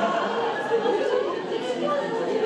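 Indistinct chatter of many people talking at once, their voices overlapping.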